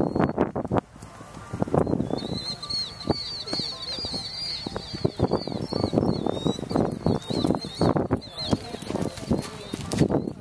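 A small bird singing a rapid string of short, high chirps from about two seconds in until near the end, over low voices talking and irregular dull thuds.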